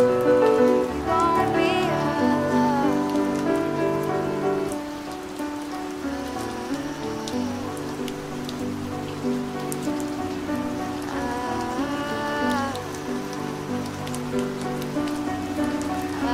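Steady rain falling on a hard surface, laid over a soft acoustic pop song: held chords with a singing voice in the first few seconds and again about eleven seconds in.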